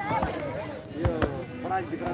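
Men talking, with a few sharp knocks or claps cutting through, one about a quarter second in and another a little over a second in.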